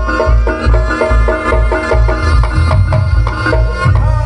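Live Reog Ponorogo gamelan accompaniment: drums beating a fast, even rhythm under repeating notes from bronze gong-chimes, with a reed pipe (slompret) holding a high, steady note over the top.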